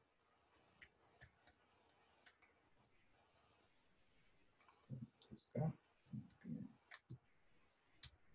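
Faint computer keyboard clicks as a terminal command is typed, a few separate keystrokes at first, then a louder cluster of low sounds about five to seven seconds in.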